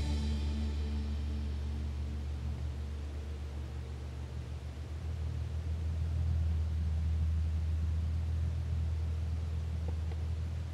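Background music fading out within the first second, then a steady low rumble of street ambience that swells a little about halfway through.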